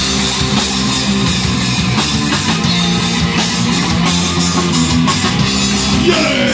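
Rock band playing live and loud: distorted electric guitar holding chords over bass and a steady drum kit beat.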